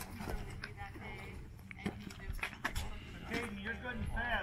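Indistinct voices of several people talking quietly, with a few short clicks over a low, uneven rumble.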